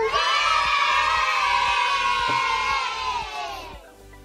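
Crowd-cheer sound effect: one long cheer of many voices that fades out just before the end.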